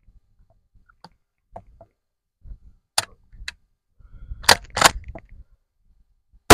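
A scattering of short, sharp clicks and knocks, the two loudest close together near the end: handling noise from a 20-gauge shotgun as it is held shouldered and aimed before firing.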